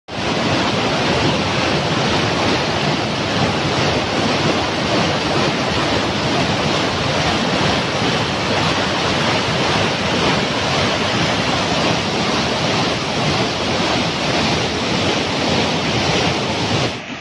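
Waterfall and mountain river in flash flood, a loud, steady rush of white water pouring over rocks: the river swollen by heavy rain.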